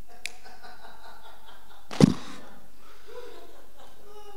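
A faint, distant voice of a congregation member calling out an answer off-microphone in a hall. About two seconds in, a single short, loud burst lands close to the handheld microphone.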